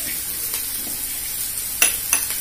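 Sliced onions frying in oil in an aluminium kadai, sizzling steadily, with one sharp click near the end.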